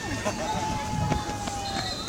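Distant chatter of children and adults, with one thin, steady tone held for about a second and a half.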